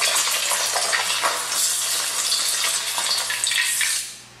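An egg frying in hot oil in a wok, making a steady sizzle, with a spatula stirring and scraping against the pan now and then.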